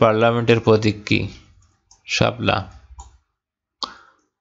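A man speaking in Bengali, reading quiz questions aloud in two short stretches, then a single sharp click near the end, a computer mouse click.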